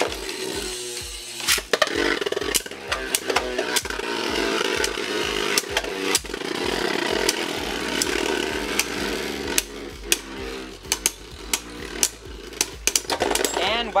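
Two Beyblade Burst tops, Dark Deathscyther and Wild Wyvern, spinning in a plastic stadium with a steady whirr and sharp clacks as they collide. The clacks come more often in the later seconds, until Wild Wyvern bursts apart near the end.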